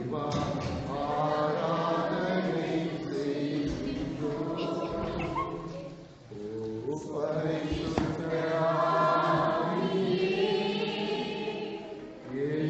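A congregation singing together in long held phrases, with a short break about six seconds in.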